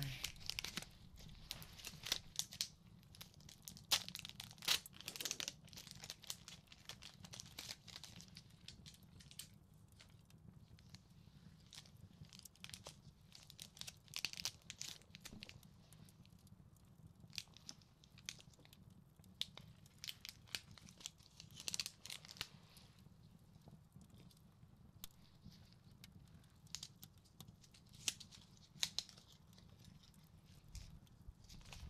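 A sterile needle packet being crinkled and torn open by gloved hands: irregular crisp crackles and rustles, busiest in the first several seconds and sparser after.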